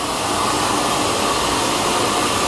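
Steady whooshing machinery noise with a faint hum underneath, from the maple sugarhouse's processing equipment running.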